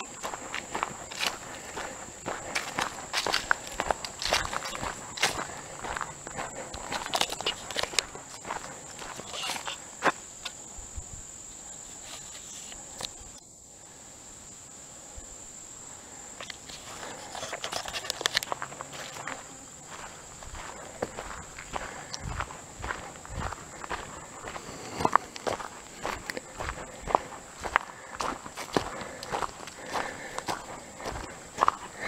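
Footsteps crunching on a dirt and gravel road at a steady walking pace, thinning out for a few seconds about midway, over a steady high-pitched insect drone from the summer woods.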